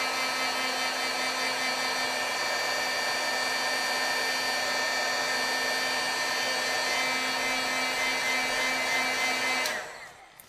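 Handheld craft heat gun blowing steadily with a steady fan whine, heat-setting white pigment ink on foil card stock; it is switched off just before the end and the sound dies away.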